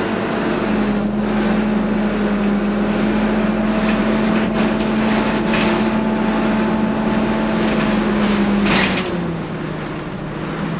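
Dennis Dart SLF single-decker bus heard from inside the passenger saloon: steady engine and road noise while it drives along, with a few light rattles. Shortly before the end there is a short burst of noise, and then the engine note drops in pitch and the sound eases.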